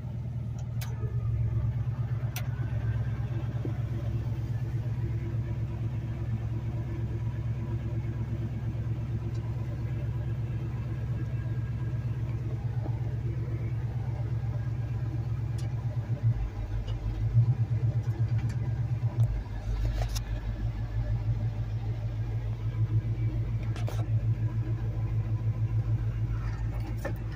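1978 Chevrolet C10 pickup's engine running steadily, heard from inside the cab. Its note shifts partway through as the truck gets under way. A couple of light clicks come in the first few seconds.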